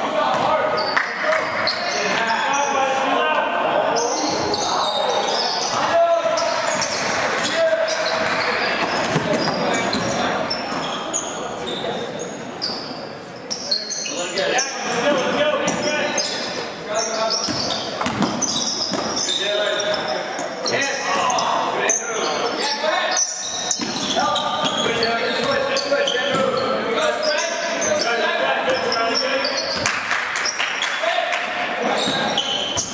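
Basketball game sounds in a gym: the ball bouncing on the hardwood court amid voices calling out, echoing in a large hall.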